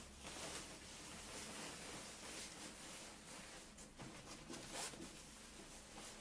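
Faint rustling of a fabric cover being pulled and smoothed down over the frame of a shirt-ironing dummy, with a few soft brushing scrapes.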